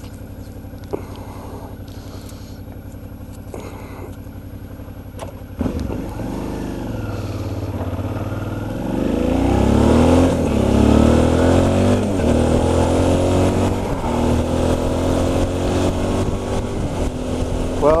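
Suzuki V-Strom DL650 V-twin engine with an aftermarket Akrapovic exhaust idling steadily for about five seconds. It then pulls away, rising in pitch and dropping back at each upshift as it accelerates through the gears, and settles into a steadier, louder cruise for the last few seconds.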